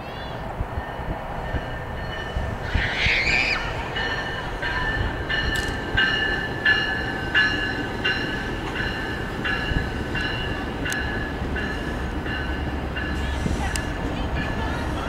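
Norfolk Southern diesel locomotive approaching with a low engine rumble, a brief high squeal about three seconds in, then a bell ringing in steady strokes about once every 0.7 seconds.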